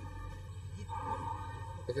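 A faint, steady low hum with a soft held tone above it, in a short gap between speech.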